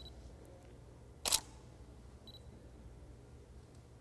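A single DSLR shutter click about a second in, over quiet room tone.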